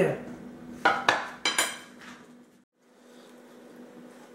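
Cutlery clinking against a plate: four quick, ringing clinks about a second in.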